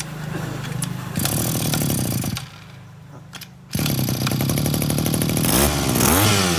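Zenoah GE2KC two-stroke engine running just after being pull-started. It picks up about a second in, drops back to a low idle at about two and a half seconds, and revs up again a second later. Its pitch rises and falls near the end, with the engine running smoothly.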